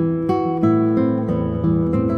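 Solo classical guitar with nylon strings, played fingerstyle: a slow melody of plucked notes over sustained bass notes and chords.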